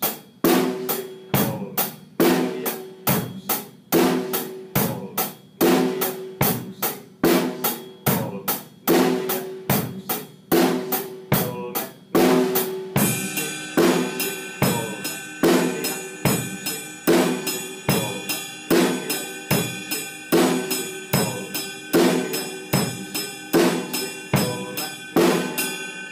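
pdp drum kit playing a basic rock beat: bass drum and snare with steady eighth notes on the closed hi-hat. About halfway through, the right hand moves from the hi-hat to the ride cymbal, and the ride's ringing wash fills in over the same bass-and-snare pattern.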